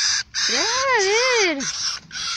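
Young caracaras giving harsh, raspy begging screeches in quick succession as food is brought to them.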